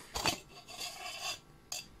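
Metal can casing of a home-built jet engine being slid off the inner assembly, scraping along it for about a second, with a short knock before the scrape and another near the end.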